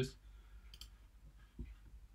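Faint clicks of a computer mouse: a light click a little under a second in and a soft tap near the end.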